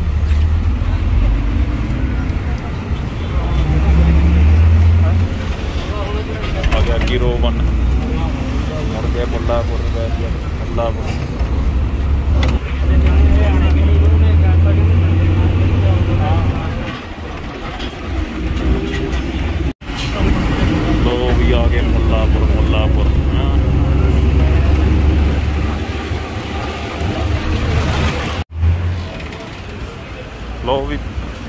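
A moving bus heard from inside the cabin: a heavy low rumble of engine and road noise that swells and eases, with voices over it. The sound breaks off abruptly twice in the last third.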